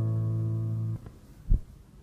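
Acoustic guitar holding the closing chord of an Argentine folk triunfo, then cut off sharply about a second in. Half a second later comes a single low thump, and the sound fades away.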